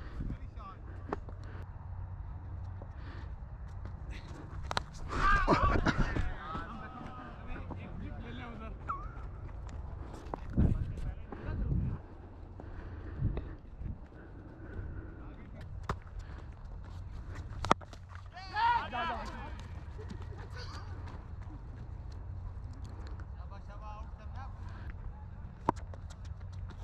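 Steady low rumble of wind and movement on a body-worn GoPro microphone, with two brief distant shouts from players and a few sharp clicks.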